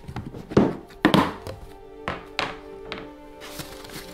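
Black plastic storage box lid being unclipped, lifted off and set down on a table: a few sharp plastic knocks, the loudest about half a second and a second in. Background music with held tones plays underneath.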